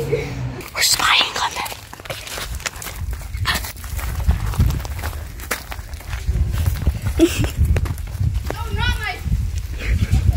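Footsteps crunching over dry dirt and brush, with a low rumble on the microphone.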